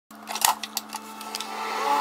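Single-serve pod brewer being shut and started: sharp clicks, the loudest about half a second in, over a steady mechanical hum.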